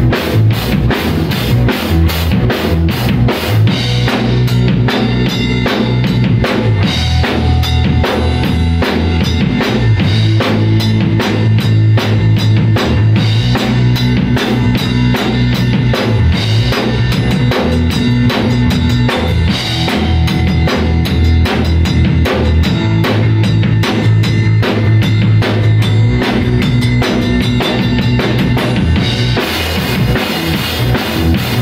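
A small rock band playing live and loud without vocals: a drum kit keeps a steady beat while a bass guitar holds long low notes that shift every few seconds, with an electric guitar playing along.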